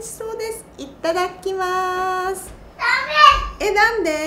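A woman speaking Japanese in a high, lively voice. She holds one long steady note about halfway through, then a louder, higher exclamation near the end.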